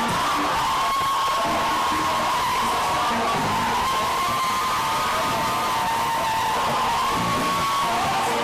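Live gospel praise band playing at full volume, loud and steady, with one high note held for several seconds over the band and a noisy crowd in the hall.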